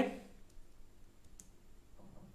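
Near-silent room tone with a single faint click about one and a half seconds in.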